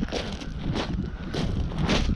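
Footsteps crunching over loose stones while a bag-laden touring bike is pushed along, a crunch about every half second, over a low rumble of wind on the microphone.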